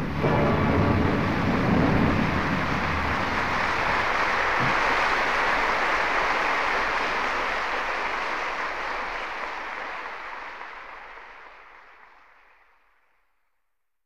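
Audience applauding after a live opera aria, a dense, steady clapping that fades out over the last several seconds.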